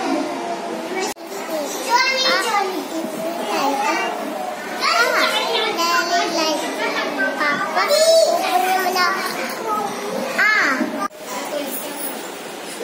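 A group of young children chattering and calling out at once, their high voices overlapping, with squeals and rising calls. The sound cuts off briefly about a second in and again near the end.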